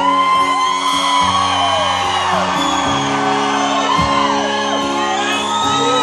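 Steel-string acoustic guitar strummed through an instrumental gap between sung lines, with audience members whooping and shouting over it in a large, echoing hall.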